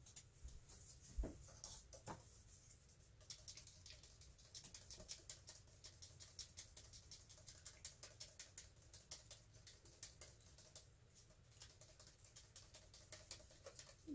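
Faint, rapid ticking and scraping of a stick stirring thick white acrylic paint and pouring medium in a cup, about three to four strokes a second, after a couple of light knocks at the start.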